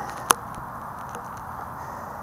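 One sharp click about a third of a second in, over steady low background noise, from the small handheld camera being handled and moved.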